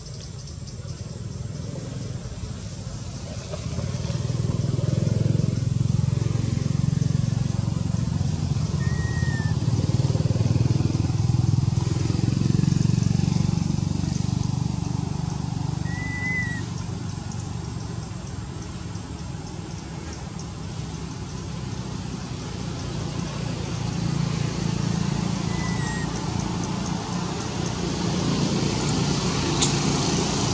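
Low engine rumble of passing motor vehicles, swelling and fading twice. A few brief high chirps sound over it.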